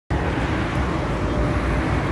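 Steady outdoor street noise: a low, continuous rumble of road traffic.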